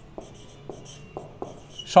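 Marker pen writing on a whiteboard, a run of short strokes across the board.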